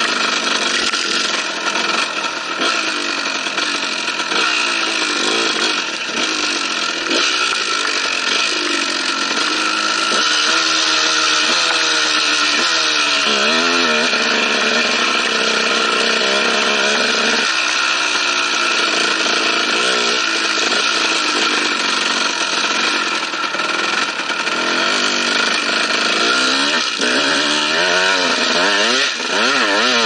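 KTM dirt bike engine being ridden hard, its pitch rising and falling over and over as the throttle is opened and closed, under a heavy rush of wind on the microphone.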